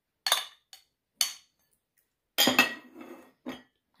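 A metal spoon and ceramic bowls clinking as macapuno is scooped out of one bowl into another: a few sharp separate clinks in the first second or so, a busier run of clinks and scraping around two and a half seconds in, and one last clink just before the end.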